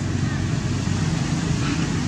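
Steady low rumble of background noise, even in level throughout.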